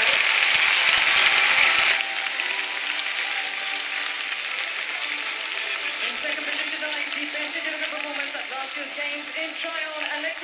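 Crowd applauding loudly for about two seconds, cut off abruptly, followed by quieter music playing through the arena sound system, with one short knock about six seconds in.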